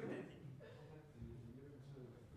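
Faint, indistinct talking in the room, with no other sound standing out.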